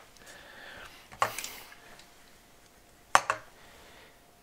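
Two short, sharp clicks about two seconds apart over quiet room tone, the first followed by a brief hiss.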